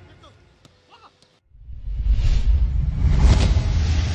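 Outro sound effect: a deep rumbling whoosh that swells up about a second and a half in and grows louder toward the end.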